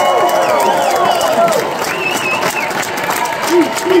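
A large theatre audience cheering and applauding loudly in answer to a call to make noise, with many shouts.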